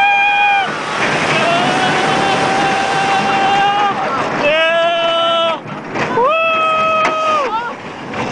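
Roller coaster riders screaming in long held screams, one after another and sometimes several at once, over steady wind rushing across the microphone and the rumble of the steel coaster train running fast down its dips.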